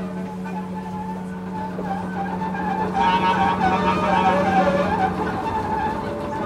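Free-improvised experimental jazz: a bowed double bass holds a steady low drone that drops out near the end, under wavering higher clarinet tones. A rougher, scratchier texture joins about three seconds in.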